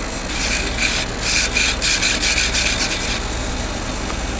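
Short scratchy rubbing strokes in quick, irregular succession, about three a second, stopping about three seconds in.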